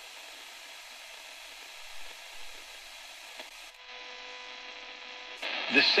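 Tiemahun FS-086 emergency radio on the AM band giving steady static hiss while it is tuned between stations. Just past halfway the hiss thins to a faint steady whistle, and near the end a talk station's voice comes in. The reviewer puts the AM noise and buzzing down to interference from the radio's lit LEDs.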